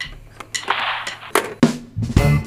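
A band starting up: sharp drum-kit hits, one at the very start and a quick run of them near the end, with a noisy stretch between.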